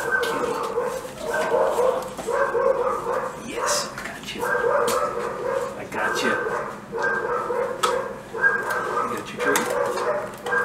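Dogs barking over and over, about one bark a second.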